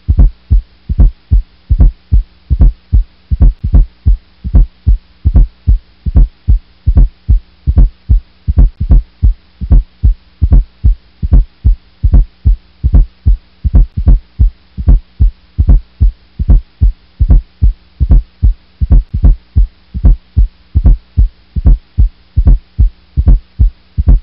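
Recorded heart sounds with a fourth heart sound (S4 atrial gallop): each beat carries a soft extra sound just before S1 and S2, the "Tennessee" or "a stiff wall" cadence. The low thuds repeat steadily about two to three times a second over a faint steady hum. An S4 is the sign of a stiff, non-compliant ventricle, as in ventricular hypertrophy, myocardial ischemia or hypertension.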